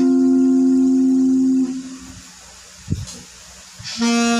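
A held note from an acoustic guitar and saxophone cover rings steadily, then fades out about a second and a half in. After that comes a quiet pause with one soft low thump, and the saxophone comes back in right at the end.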